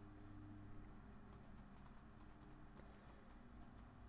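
Near silence: faint, rapid clicking at a computer, over a low steady hum.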